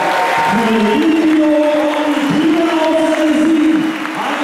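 Long, held vocal notes, each about a second long, over a noisy arena crowd. They break off briefly a little past halfway and again near the end.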